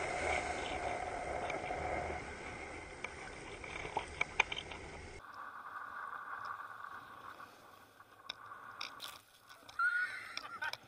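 Water sloshing and splashing around a camera held at the water surface, with a few sharp clicks. The sound changes abruptly at a cut about five seconds in and is fainter after it.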